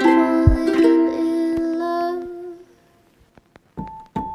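Background music with plucked-string notes over held tones and a low beat, fading out about two-thirds of the way through; after a brief near-silent gap, another track begins near the end with sharp, ringing notes.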